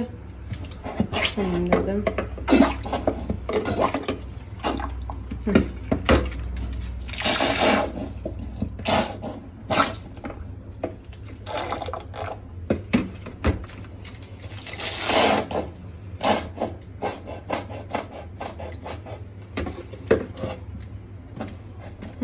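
Thick bleach poured from a plastic bottle into a basin of hot water holding stove grates, with knocks and clatter of handling. There are two louder rushes of pouring, about a third and two-thirds of the way in.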